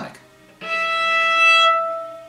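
Cello A string bowed while lightly touched at its one-third point, sounding the second harmonic: a single clear E, a fifth above the string's octave harmonic. The note starts about half a second in, swells, then fades and rings on near the end.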